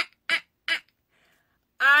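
A woman laughing in short, staccato 'ha-ha-ha' bursts, about three a second, for the first second or so.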